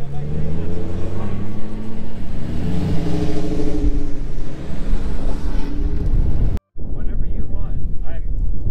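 A vehicle engine running close by, its pitch rising and falling gently, cutting off abruptly near the end; brief voices follow.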